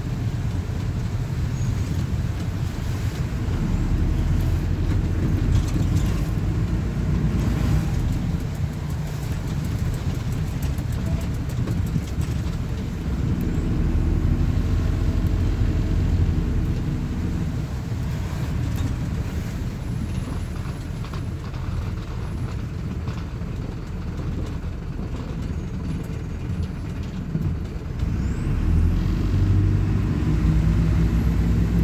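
Cabin sound of a Plaxton Beaver 2 minibus on the move: its diesel engine and road noise. The sound grows louder and eases off as the bus pulls away and slows, quietest in the latter half and rising again near the end.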